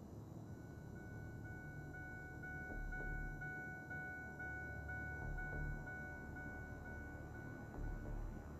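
A car's door-open warning chime, a steady high ding repeating evenly about twice a second, signalling that a door has been left open. A low rumble lies underneath.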